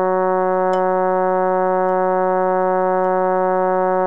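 Synthesizer playing the Bass I voice line of a choral part-learning track: one low note held steadily and unbroken, sung on the word "Amen".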